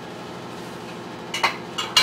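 Quiet room tone, then a few short sharp clinks of a spoon against dishes about one and a half seconds in and again just before the end.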